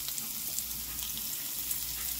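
Pieces of beef sizzling steadily in a hot skillet, a dry even hiss of meat searing in oil.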